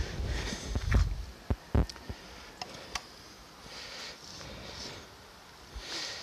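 A few footsteps and scuffs on gravel, with two dull thumps early on and several sharp clicks after them, then a quieter stretch.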